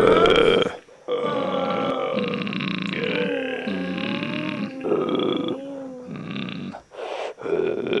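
A person's voice making grunting, groaning noises with a wavering, gliding pitch: one long stretch, then a few shorter bursts.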